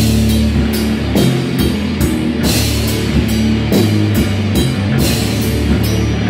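Rock band playing live in a small room: electric guitars and bass guitar over a drum kit, with cymbal and snare hits keeping a steady beat of a little over two strikes a second.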